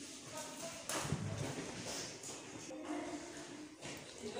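Faint background voices, with a dull thump and some rustling about a second in.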